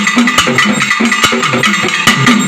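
Two pambai players beating their paired Tamil folk drums with sticks in a fast, steady rhythm of sharp strokes over low drum tones.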